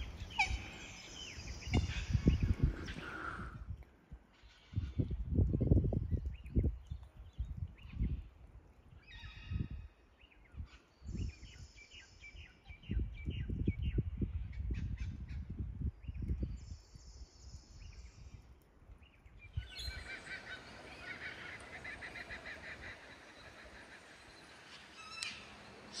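Outdoor riverside ambience: birds calling, with irregular low rumbling on the microphone that comes and goes in gusts.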